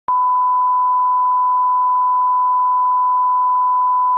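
Broadcast 1 kHz line-up tone sounding with the colour bars: one steady, unwavering pure tone that starts abruptly just after the opening.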